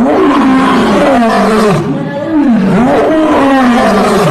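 A lion roaring: a continuous string of drawn-out calls, each rising and falling in pitch, one after another without a break.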